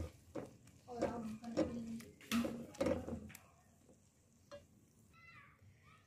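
A silicone spatula stirring and scraping chopped tomato and onion frying in oil in a pot, with scattered soft knocks against the pot, mostly over the first half.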